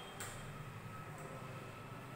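Faint steady low hum of room noise, with one brief rub of a duster wiping a whiteboard just after the start.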